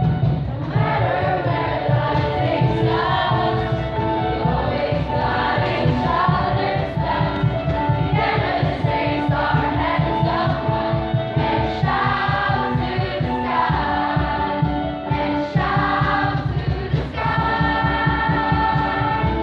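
A large mixed choir of students singing together, holding long notes.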